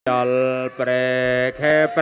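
Intro jingle: a voice chanting long, steady held notes, with two short breaks.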